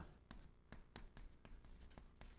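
Chalk writing on a chalkboard: a faint, irregular run of short taps and scratches as Chinese characters are chalked stroke by stroke.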